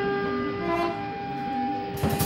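Free-improvised music from a guitar, bass clarinet, double bass and drums quartet at a sparse moment: one long, steady held note with strong overtones, a higher held note joining partway through, and no drum strikes.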